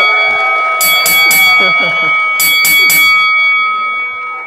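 Public-address feedback from a handheld microphone: a steady ringing tone at several pitches at once, fading near the end, over audience laughter and chatter.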